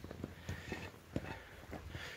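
Faint footsteps on a trail: a few soft, irregular steps.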